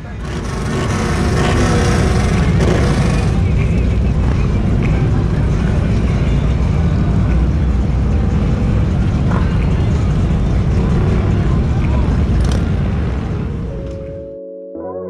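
Motorcycle engines running together, a dense, steady low rumble heard from a rider's seat. The first three seconds or so carry an added louder hiss.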